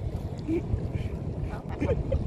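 Wind rumbling on the microphone over choppy river water slapping around a small boat.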